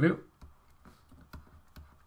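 A spoken word, then a few faint, scattered clicks from a computer pointing device as a new pen colour is picked on a digital whiteboard.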